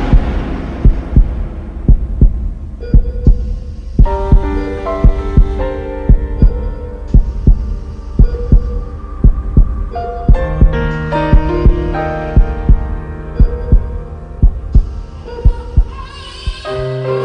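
A heartbeat sound effect, double thumps about once a second, under a dramatic music score of held notes that come in about four seconds in and grow fuller around ten seconds.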